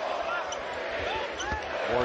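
Basketball being dribbled on a hardwood court: a few short, low bounces under faint voices in the arena.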